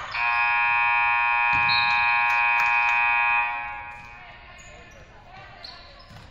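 Gymnasium scoreboard horn sounding as the game clock hits zero, marking the end of the game: one steady buzz lasting about three and a half seconds, then dying away in the hall's echo.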